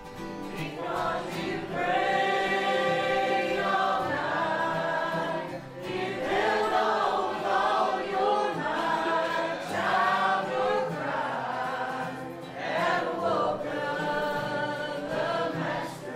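Church congregation singing a gospel hymn together in phrases, accompanied by acoustic guitars.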